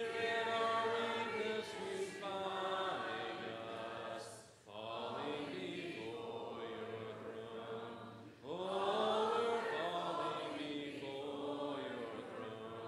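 Church congregation singing a hymn a cappella in parts, with held notes in phrases and short breaths about four and eight and a half seconds in.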